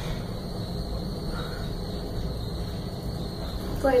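Otis Autotronic elevator car travelling down at speed, heard from inside the cab as a steady low running noise with no starts or stops.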